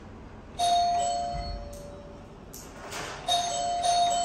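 Two-note ding-dong doorbell chime rung twice, about half a second in and again about three seconds in, each a higher note followed by a lower one that rings on and fades: visitors at the front door.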